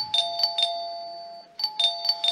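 Two-tone doorbell chime ringing twice, about a second and a half apart. Each ring is a higher note followed by a lower note that rings on: someone is at the door.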